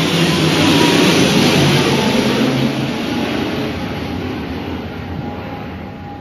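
A passing vehicle: a loud rushing rumble that swells in the first second or so, then slowly fades away.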